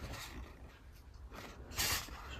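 A cardboard ready-meal sleeve rubbing and scraping against fingers as it is handled and turned, with a brief louder scrape near the end.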